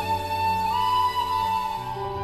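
Bansuri (Indian bamboo flute) playing a long held melody note that steps up to a slightly higher note partway through, over sustained keyboard chords.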